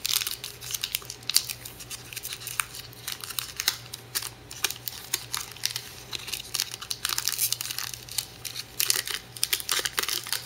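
Foil wrapper of a trading-card pack crinkling and tearing as it is pulled open by hand. The quick sharp crackles come in clusters, busiest near the start and again in the last few seconds.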